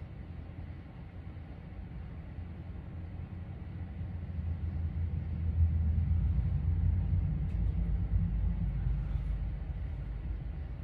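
A low steady rumble that grows louder from about four seconds in and stays at that level.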